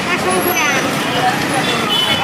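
Busy roadside street-market ambience: steady road-traffic noise with people's voices talking around it.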